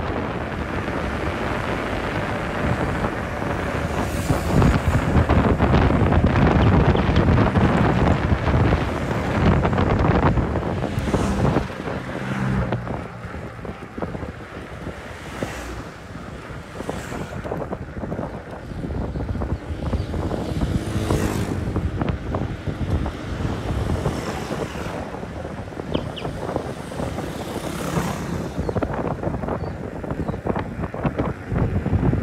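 Wind buffeting the microphone of a camera on a moving bicycle, with a rushing road noise. It is louder for the first twelve seconds or so, then eases off.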